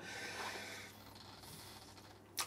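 A faint breath out through the nose, fading in under a second into quiet room tone.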